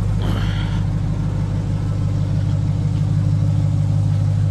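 Ram TRX's supercharged 6.2-litre V8 with a Hooker aftermarket exhaust idling steadily in drive, a deep, even hum that does not change. A brief higher sound comes about half a second in.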